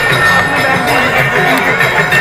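Loud devotional aarti music with singing over loudspeakers, with ringing metal bells struck repeatedly and sustaining.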